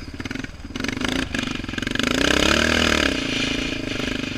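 Yamaha Raptor 700R quad's single-cylinder four-stroke engine running on the throttle in mud, dropping to a low pulsing note early on, then revving up and back down once about midway.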